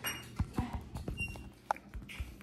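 A few scattered light clicks and knocks from handling close to the phone's microphone.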